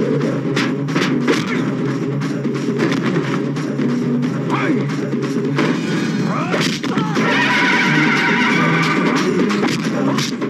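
Film fight soundtrack: background score with many sharp punch and crash sound effects laid over it.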